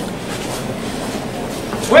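Steady shuffling of many feet dragging on the pavement as the bearers carry a Holy Week float in short, measured steps.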